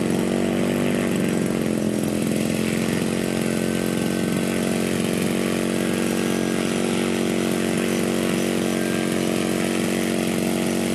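Engine of a 1/3-scale Fokker Dr.I triplane model idling steadily on the ground, its pitch wavering slightly in the first couple of seconds.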